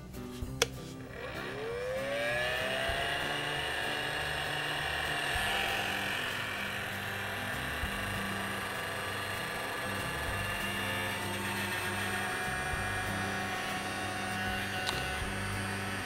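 Handheld heat gun switched on with a click, its fan motor whining up in pitch over the next second or so, then running steadily with a whir of blown air as it shrinks heat-shrink tubing over wire splices.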